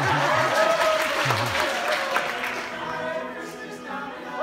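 Audience applause over a male a cappella choir's sustained sung notes and low bass line. The clapping eases off near the end.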